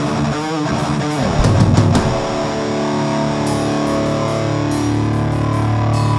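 Live rock band playing distorted electric guitar with drums. Hard drum hits for about the first two seconds, then a held guitar chord rings on under a few cymbal hits.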